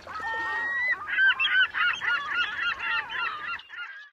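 A quick run of high, honking calls, about four or five a second, led by one longer drawn-out call and fading away near the end.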